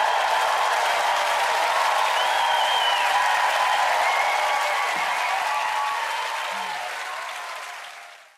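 Studio audience applauding and cheering as the dance music ends, with a few whistles or whoops above the clapping. The applause fades out near the end.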